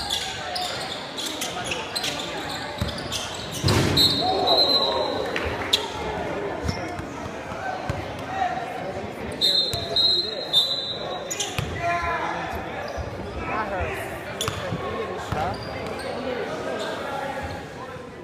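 Basketball bouncing on a gym's hardwood floor amid spectators talking and calling out, all echoing in the large hall. The loudest sound is a heavy thud about four seconds in.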